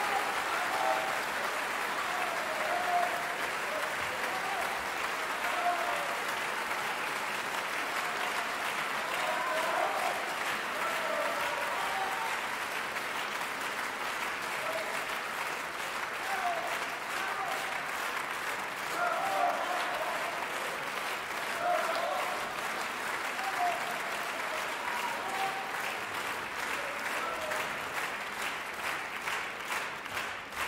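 Theatre audience applauding a ballet dancer's bow, with voices calling out over the clapping. Near the end the applause thins into separate claps.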